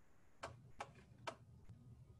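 Three faint clicks, about a third to half a second apart, over a low steady hum.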